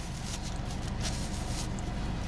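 Faint rustling and rubbing of a paper napkin wiping a mouth and beard, over a steady low hum in a car cabin.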